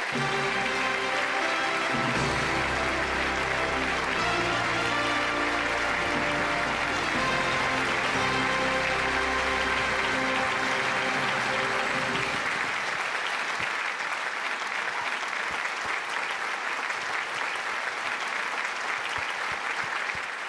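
Audience applauding steadily over music. The music's bass drops away about two-thirds of the way through while the clapping carries on.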